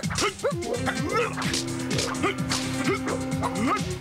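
A staff-fighting sequence: quick sharp clacks of sparring staffs and many short yelp-like cries, over background action music.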